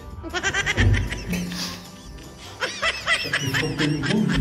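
Two bursts of high-pitched, rapidly pulsing cackling laughter over background music.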